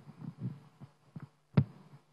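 Soft bumps and knocks from handling at a table, picked up by a chamber microphone over a low steady hum; one sharper knock about one and a half seconds in is the loudest.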